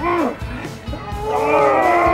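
A long, drawn-out vocal cry, such as a strained yell, begins a little over a second in and holds on one slightly falling pitch, after a short cry at the very start. Music plays underneath.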